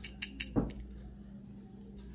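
A few light clicks and taps in the first half-second from a die-cast model car, with its metal body and plastic parts, being turned in the fingers. Then only a faint low steady hum.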